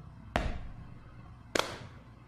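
Two heavy drum hits in a song's backing track, about a second and a quarter apart, each ringing out with a reverberant tail between the sung lines.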